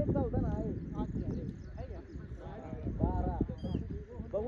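Several men's voices calling and shouting over one another.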